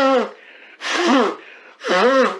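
A man sobbing: short, pitched crying cries with gasping breaths between them, about one a second.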